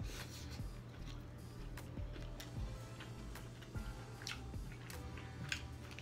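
Close-up eating sounds: wet smacks, sucking and chewing as sauce is licked off fingers and seafood is eaten by hand, with a string of short sharp clicks throughout.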